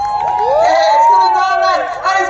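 Speech: a man's voice, drawn out with a long rising and falling pitch, over crowd noise, most likely the display commentator on the public-address system.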